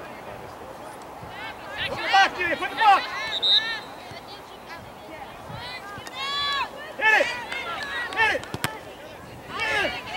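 Distant shouts and calls from players and spectators on a soccer field, in two bursts, about two seconds in and again around seven seconds in, over a steady open-air background.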